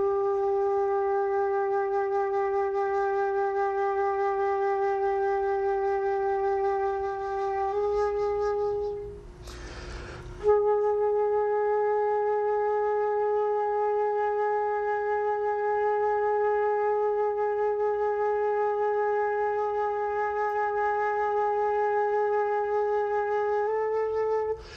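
Concert flute playing slow long tones. One steady note is held for about nine seconds and nudged slightly higher just before it stops. A short breath follows, then a second long note is held for about thirteen seconds, the sustained-tone practice the player describes as meditation.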